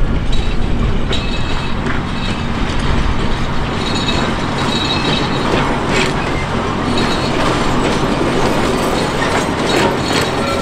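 Diesel locomotive running steadily as it hauls passenger coaches, with the wheels clattering along the rails.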